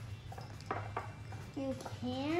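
A few light clicks and taps of a small digging tool against a glass of water, with a brief child's vocal sound near the end.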